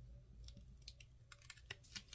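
Faint, light clicks and ticks of a metal weeding hook picking at and lifting cut tape pieces on a paper template, coming more quickly in the second half, over a low steady hum.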